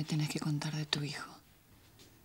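A woman speaking for about a second, then a short pause.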